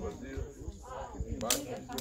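Pistol shots from a timed string of fire: sharp cracks about a second and a half in and again near the end.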